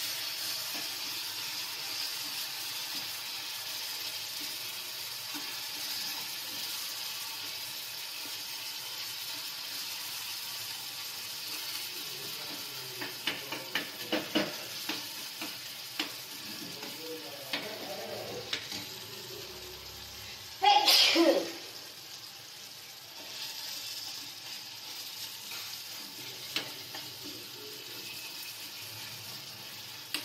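Tomato masala sizzling in a steel kadai, with a spoon stirring it and clicking and scraping against the pan in a run of taps partway through. A short loud burst comes about two-thirds of the way in.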